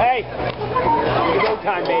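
Spectators shouting and whooping around the cage, many loud voices at once. The pounding bass of the music cuts off right at the start.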